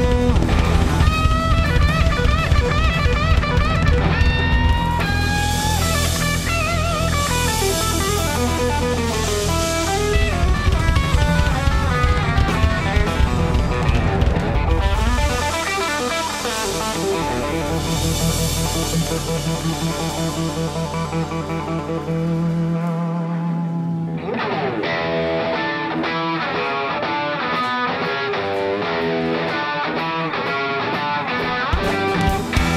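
Blues-rock band playing an instrumental passage live, an electric guitar leading over bass guitar and drums. About halfway through the bass drops away, and near the end the guitar carries on nearly alone.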